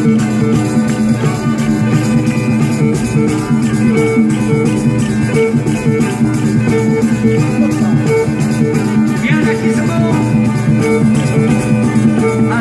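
A live folk band playing a tarantella, with violin and guitars over a drum kit, amplified through stage speakers.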